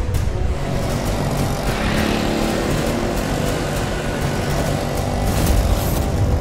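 A car running on the road, mixed under a tense background score, with sharp percussive hits toward the end.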